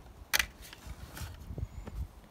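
Handling noise from a plastic submersible pump and its clear tubing: one sharp click about a third of a second in, then a few faint clicks and rustles.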